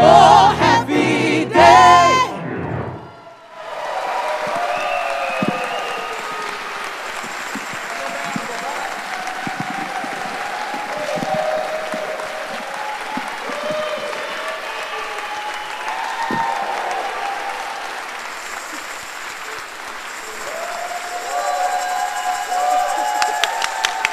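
Gospel singers and band finish their song about two seconds in, then the audience applauds steadily, with a few voices calling out toward the end.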